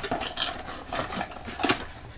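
A cardboard box insert and paper leaflet being handled and pulled out of their packaging, with irregular rustling and small clicks.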